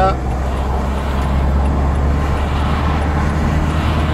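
Steady in-cabin noise of a car cruising on a motorway: a loud, even low drone from the engine and tyres on the road, heard from inside the car.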